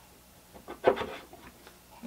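A statue's metal foot peg sliding into the slot in its base: light rubbing and a few soft clicks, with one sharper knock a little under a second in as the figure seats.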